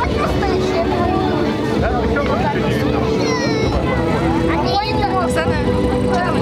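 Spectators talking close by over a steady drone of Yak-52 trainers' nine-cylinder radial piston engines as three of them fly past in formation.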